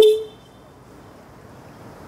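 A single short beep of a moped or scooter horn, one steady note that dies away within half a second, followed by faint background noise.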